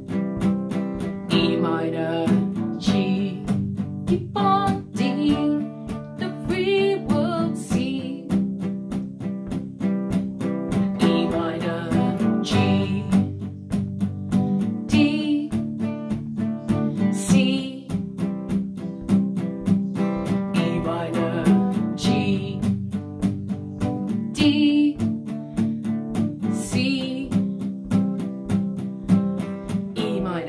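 Acoustic guitar strummed with a plectrum in steady downstrokes, changing through the open chords of the chorus (C, D, E minor).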